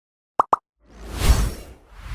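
Animated-logo intro sound effects: two quick pops, then a whoosh that swells and fades.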